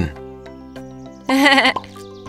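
Background music with steady held chords. About a second and a half in comes a short, loud, wavering vocal sound from a cartoon character, a bleat-like giggle.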